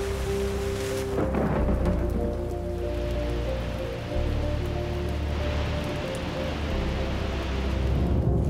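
Music with held chords over the steady rush of a waterfall, which swells about three seconds in. A water splash comes about a second in.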